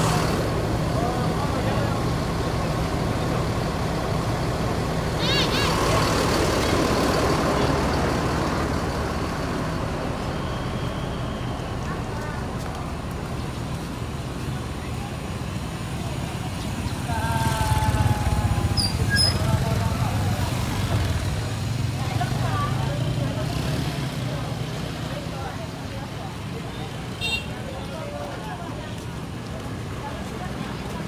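Mercedes-Benz coach bus's rear-mounted diesel engine running close by at low speed, a steady low drone that swells for a few seconds about seventeen seconds in. A short hiss comes about five seconds in, and there are voices in the background.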